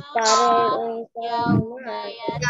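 A child singing over a video call, two held, wavering sung phrases with a brief break about a second in.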